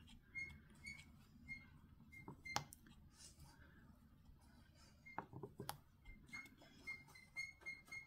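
Near silence with faint, irregular light clicks of a diamond-painting drill pen picking up resin drills from the tray and pressing them onto the canvas. Faint short high chirps repeat in the background.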